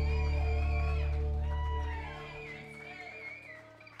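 A live band's final chord ringing out on electric and acoustic guitars over a held bass note, closing a song. The bass drops out about two seconds in, and a few guitar notes bending in pitch fade away.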